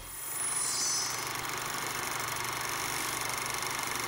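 A steady, even rushing noise drone with a low hum underneath, with faint high tones falling away in the first second.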